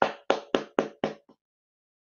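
A quick run of about six sharp strikes, roughly four a second, each dying away fast, stopping after about a second and a half.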